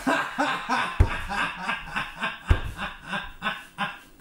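A person laughing in quick repeated bursts, about four a second, through the whole stretch, with two low thuds about a second in and again halfway through.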